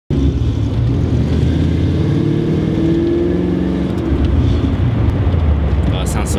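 A car engine running loud and steady.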